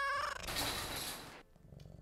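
A domestic cat meowing once, a drawn-out call that ends about half a second in. It is followed by about a second of hiss-like noise.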